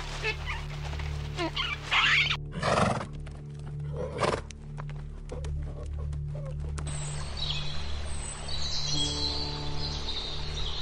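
Ambient drone music runs throughout. A horse neighs briefly twice, about three and four seconds in, with a run of sharp clicks that fits hooves stepping on stony ground. Higher chirping calls sound in the first two seconds and again near the end.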